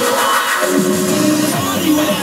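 Dance music played through a DJ controller mix, with a deeper bass line coming in a little under a second in.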